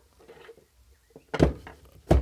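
Handling noise: faint rustling, then a single dull thunk about one and a half seconds in as the metal-cased immersion circulator is moved about on the wooden workbench.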